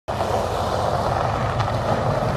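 Steady vehicle noise: a low engine hum under an even rushing noise.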